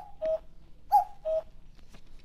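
Short two-note sound effect, a higher note falling to a lower one, played twice about a second apart, marking a time-skip.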